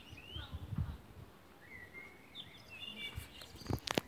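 Small birds chirping in short twittering calls. There are a few soft low thumps, and two sharp taps near the end.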